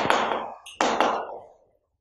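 Chalk writing on a chalkboard: two scratching strokes, each starting with a sharp tap. The first comes right at the start and the second just under a second in.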